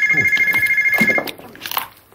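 Electronic ringer of an early-1990s portable telephone: two high tones sounding together in a fast, even trill. It stops about a second in as the handset is picked up.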